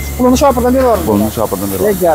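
Speech: a voice talking, over a low background rumble.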